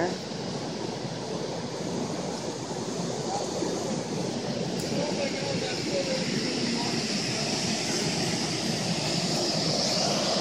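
Steady rushing noise of a waterfall, growing slightly louder toward the end.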